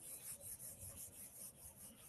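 Near silence: room tone with a faint, even rubbing or scratching, about five strokes a second.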